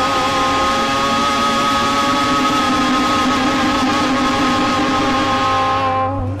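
Two women's voices holding the last note of a worship song together in harmony over instrumental backing, one long sustained chord that cuts off just before the end.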